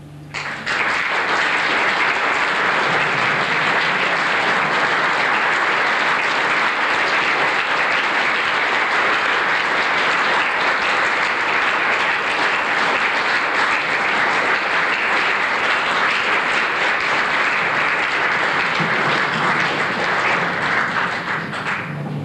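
Audience applause, breaking out about half a second in just after the orchestra's final chord dies away, and carrying on steadily before easing off slightly near the end.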